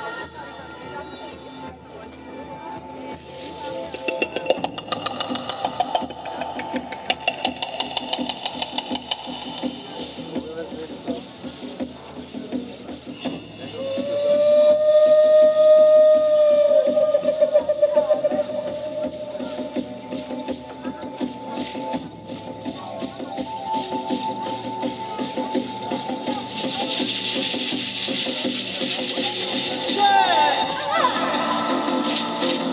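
Live music on a Native American-style wooden flute, played through a PA, with a long, loud held note about halfway through. It plays over softer accompaniment, with shaker-like rattling that gets louder near the end.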